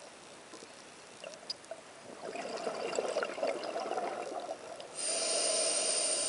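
Scuba diver's regulator breathing underwater: exhaled bubbles gurgle from about two seconds in, then a steady hissing inhale through the regulator starts about five seconds in.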